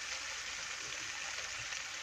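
Cherry-tomato sauce with olive oil and garlic sizzling steadily in a frying pan over the heat.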